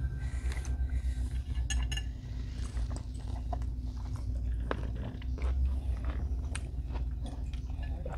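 Close-miked chewing and mouth sounds of people eating food, with scattered small clicks and crackles, over a steady low room hum.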